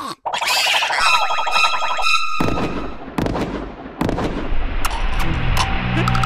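Cartoon sound effects: a springy, pulsing, wavering tone lasts about a second and cuts off abruptly about two seconds in. It is followed by a rustling hiss with a few sharp clicks.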